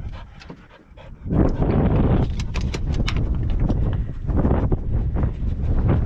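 A dog panting in a steady rhythm, starting about a second in.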